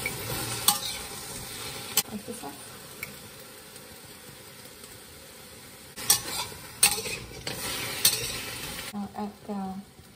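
Food sizzling as it fries in a pan, with sharp metal clanks of a utensil stirring against the pan. The sizzle eases off after about two seconds and comes back louder around six seconds, with three more clanks, then dies away near the end.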